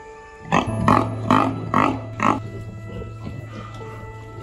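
A pig grunting five times in quick succession, each call short, over about two seconds, with background music of steady held notes underneath.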